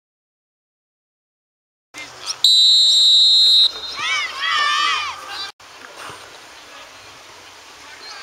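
After silence, a referee's whistle gives one loud, steady blast of a little over a second, followed by players' voices calling out on the pitch. The sound then cuts off sharply and gives way to quieter open-air field noise.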